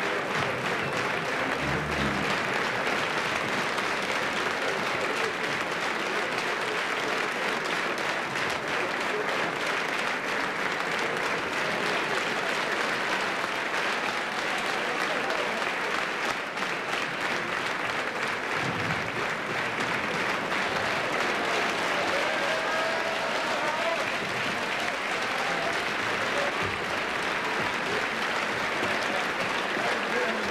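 A theatre audience applauding steadily: dense, even clapping throughout.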